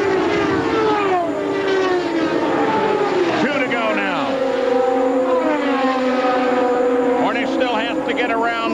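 Indy cars' V8 engines at racing speed going past. The pitch drops sharply as a car passes about three and a half seconds in and again near the end, with a steady engine note in between.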